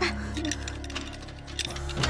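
Background music of sustained low tones, with a run of small metallic clicks of a key being worked in a door lock.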